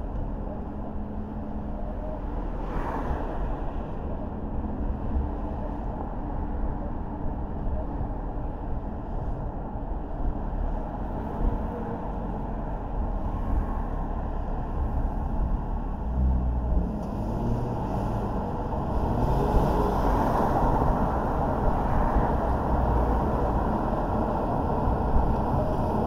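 Steady road and running noise of a car driving along a city street, growing somewhat louder in the second half.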